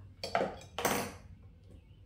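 Pottery trimming tools clattering against each other and the wheel's splash pan as they are rummaged through and one is picked up. Two short clattering bursts about half a second apart, in the first second.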